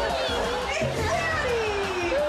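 A small girl crying in fright, a long falling wail in the second half, over background music.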